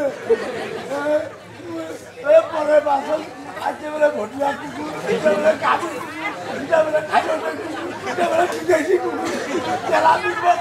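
Several voices talking over one another: crowd chatter.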